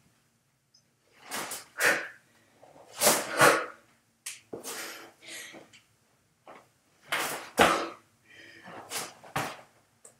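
A woman breathing hard from exertion during push-ups, with sharp exhalations that often come in quick pairs, a few times over.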